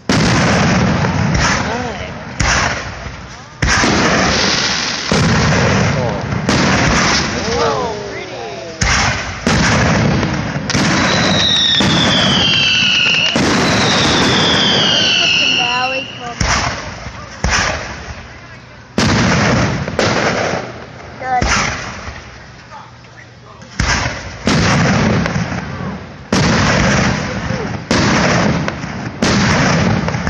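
Aerial fireworks shells bursting one after another, loud booms every second or two with rumbling tails. High falling whistles come through around the middle.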